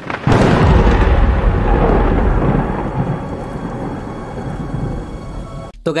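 Thunder sound effect: a sudden loud crack that rolls into a deep rumble and fades away over about five seconds.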